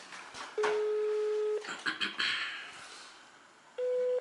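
Outgoing call on a smartphone's speakerphone: one steady call tone lasts about a second, and a shorter, slightly higher tone begins near the end.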